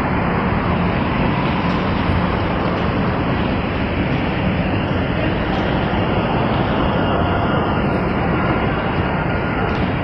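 Steady, loud rushing background noise with no distinct events: the ambient roar picked up by a handheld phone microphone while walking through a busy mall concourse.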